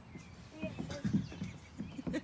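A small child's faint, short vocal sounds, with scattered soft knocks and rustling from children moving on a plastic toddler slide and the grass.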